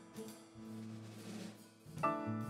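Live jazz combo playing a quiet passage: held electric bass notes with light drum and cymbal work, and a louder phrase coming in at the very end.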